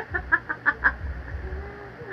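A woman laughing, a quick run of short "ha" sounds for about the first second that then trails off.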